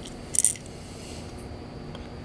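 A brief clicking clatter about half a second in as a hard plastic crankbait lure is turned over in the hand, followed by faint room hiss.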